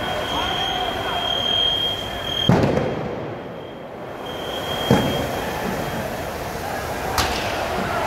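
On-scene sound of a fire in an airport terminal: a steady high-pitched tone sounds over a noisy hubbub, cuts off after about two and a half seconds and comes back briefly later. Three sharp cracks come at intervals of about two and a half seconds.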